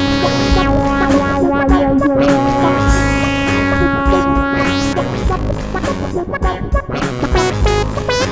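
Electronic wind synth (Akai EWI 4000S through a synthesizer) holding one long, bright note over a looped backing with a steady low beat; the held note stops about five seconds in and the loop carries on with shifting synth notes.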